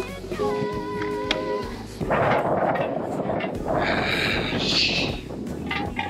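Background music with a stepped melody for about two seconds, then loud wind buffeting the microphone, a dense rumbling rush.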